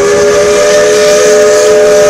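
Steam locomotive's chime whistle sounding one long, steady blast, a chord of several close tones over a hiss of escaping steam, blown for the grade crossing ahead.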